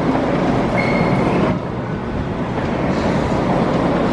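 Hard plastic wheels of a Penny Nickel cruiser skateboard rolling over a smooth terminal floor, a steady rolling rumble. A brief high-pitched tone sounds about a second in.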